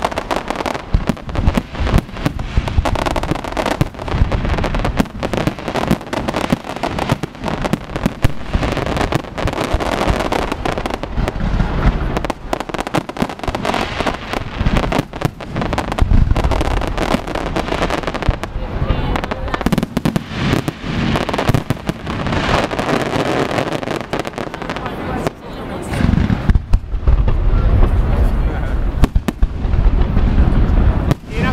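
Professional fireworks display: a dense, continuous barrage of aerial shell bursts and crackling, with heavier, louder booms in the last few seconds.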